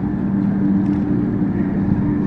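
Home-built houseboat's motor running steadily under way, a constant hum with a wash of water and wind noise beneath it.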